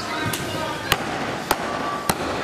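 Meat cleaver chopping through ribs on a wooden chopping block: three sharp strikes, evenly spaced a little over half a second apart.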